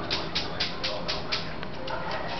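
Small dog making rapid, evenly repeated sharp sounds, about four a second, during a tense nose-to-nose meeting with another dog.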